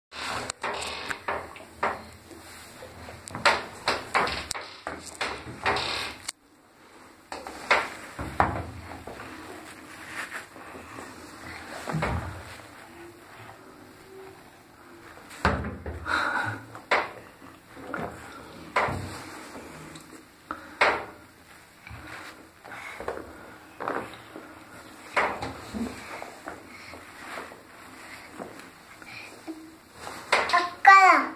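Irregular knocks and clatter of a toy excavator banging against a bathtub. The knocks come in clusters, loudest in the first six seconds.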